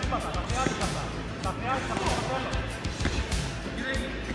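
Shouting from coaches and spectators in an echoing sports hall, with scattered thuds of kicks and punches landing during a kyokushin karate bout, over background music.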